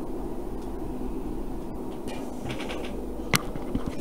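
Steady low hum with a fan-like hiss from bench electronics, broken by a few faint ticks and one sharp click about three seconds in.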